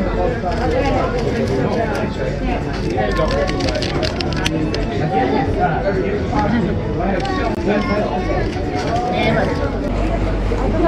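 Indistinct voices of people talking at a busy outdoor café, overlapping, with a few light clicks.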